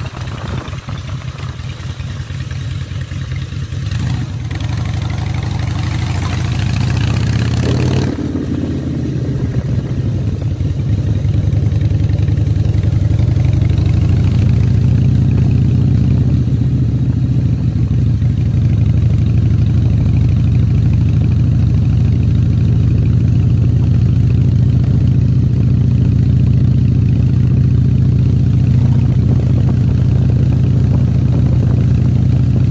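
2002 Harley-Davidson Softail Custom's V-twin engine running, with a hiss over it that cuts off suddenly about eight seconds in. The engine then grows louder over a couple of seconds and runs on steadily.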